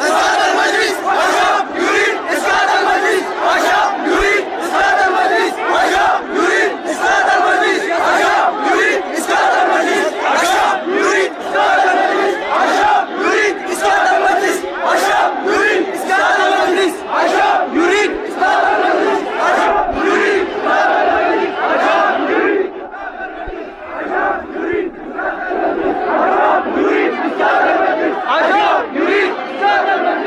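A large crowd shouting and chanting together, many voices at once with a pulsing rhythm. It dips briefly about three quarters of the way through.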